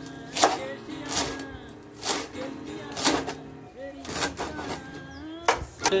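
Kitchen knife chopping spring onions on a wooden cutting board, sharp strokes about once a second, over background music.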